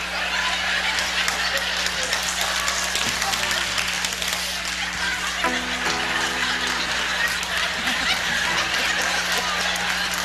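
A live audience laughing and clapping, over a steady low hum. A short held musical note sounds about halfway through.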